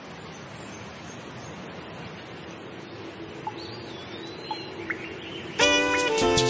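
Steady rain hiss with a few faint bird chirps. Near the end the music comes in suddenly with a loud sustained chord.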